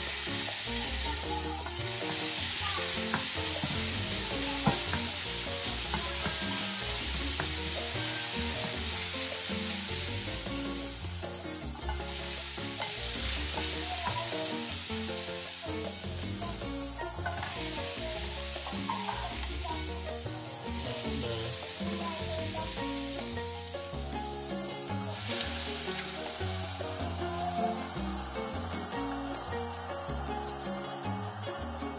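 Diced onion and tomato sizzling as they fry in a stainless steel skillet, with a steady hiss and a wooden spoon stirring and scraping them around the pan.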